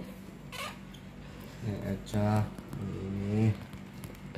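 A person's voice making two drawn-out wordless sounds, like humming, starting a little under two seconds in.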